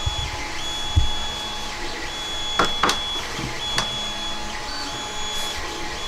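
Sharp clicks and low knocks from handling the magnet-mounted head of a painted 3D-printed figure as it is lifted off. A high steady whine runs in the background and breaks off briefly about every second.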